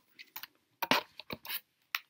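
Small product packets being handled: a quick string of crinkles and clicks, the loudest about a second in.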